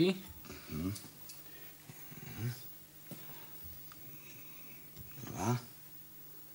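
Short fragments of a man's voice, three brief utterances too low or unclear to make out, over a steady low hum, with a faint click about three seconds in.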